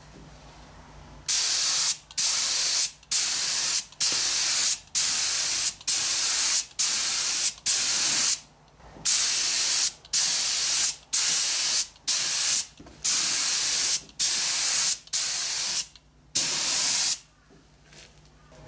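Gravity-feed compressed-air spray gun spraying nitrocellulose lacquer in a run of short hissing bursts, about one a second, as the trigger is pulled for each pass across the top.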